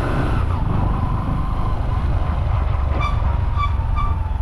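Steady low rumble of the vehicle the camera rides in as it drives along a paved street, engine and road noise together. Near the end, three short high tones sound over it.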